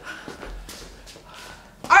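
Quiet footsteps and shuffling of several people running drills back and forth across a hard studio floor.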